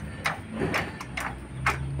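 Sharp metallic clicks and clacks, roughly two a second, as a long steel handle is worked at a floor jack or bolt under the front of a Toyota Revo, over a low steady hum.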